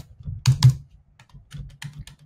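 Computer keyboard keystrokes: a few short key presses, the loudest pair about half a second in, with lighter taps near the end.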